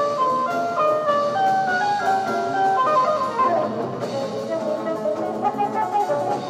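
Jazz ensemble recording: several melodic lines moving in quick stepping notes over a drum kit.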